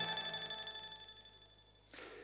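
The last chord of a TV news opening theme rings out as a few sustained tones, fading away to near silence about a second and a half in.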